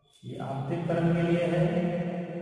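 A man's voice drawn out in one long, fairly steady tone, like a hum or a held vowel, starting a fraction of a second in.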